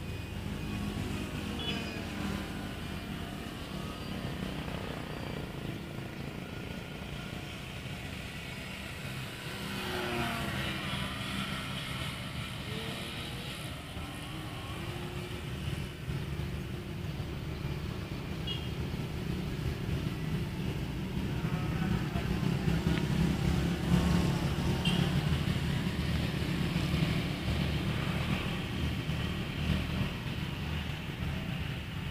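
Small engine of a Lil Ripper RC aerobatic plane buzzing in flight, its pitch bending as it manoeuvres. It grows louder in the second half as the plane comes closer.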